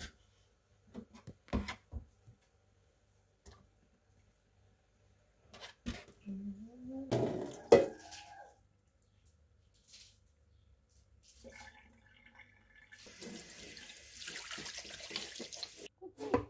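Scattered clicks and knocks in a stainless-steel sink as aloe vera leaves are handled, the loudest a sharp knock about halfway through. A tap runs steadily into the sink for about three seconds near the end.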